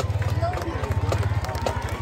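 Indistinct voices over a low, pulsing rumble, with a regular light ticking about three times a second and a faint steady tone; the band is not playing.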